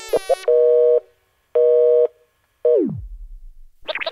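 Telephone busy signal: a couple of short clipped blips, then two half-second beeps of the two-tone busy tone, half a second apart. The third beep slides steeply down in pitch and fades out.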